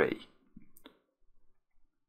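The end of a spoken word, then a few faint computer mouse clicks in quick succession about a second in, with quiet room tone around them.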